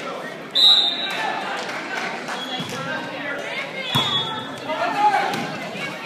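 A volleyball referee's whistle blows one short, sharp blast about half a second in. The volleyball is then struck, with a sharp hit and a brief high squeal near four seconds, over voices echoing in the gym hall.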